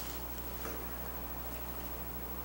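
Quiet room tone: a steady low hum with faint hiss, and one faint tick about two-thirds of a second in.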